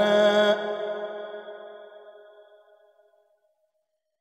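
A male reciter's Quran recitation (tilawat), holding a long melodic note that breaks off about half a second in. Its reverberation then fades out over the next two to three seconds into silence.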